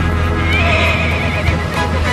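A horse whinnies about half a second in, one wavering call lasting about a second, over background music.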